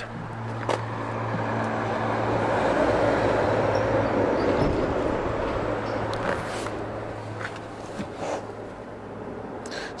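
A road vehicle going by outside the parked car: a broad rush of tyre and engine noise swells over about three seconds and then fades away, over a steady low hum.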